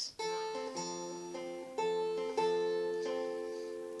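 Acoustic guitar fingerpicked: a repeating arpeggio pattern, the thumb and fingers plucking single strings in turn at about two notes a second, each note left ringing over the next.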